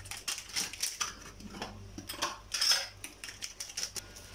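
Metal spoon and utensils clinking and knocking against a stainless steel mixing bowl: a string of irregular light taps, the loudest a little under three seconds in.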